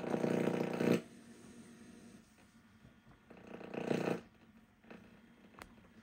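VCR starting playback of a tape: two short buzzing whirs from the tape mechanism about three seconds apart, then a faint click near the end.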